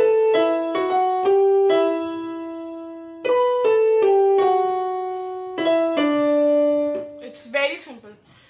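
Electronic keyboard with a piano sound playing a slow melody, often two notes at a time, each struck note ringing and fading. The playing stops about seven seconds in.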